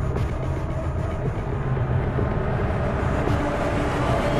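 Low, steady drone in a tense background score.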